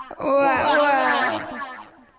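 A man's voice singing one long, wavering held note, a vocal wail that fades out near the end.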